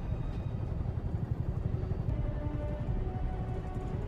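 Steady low rumble of a helicopter's engine and rotors heard from inside the cabin, with quiet film score over it.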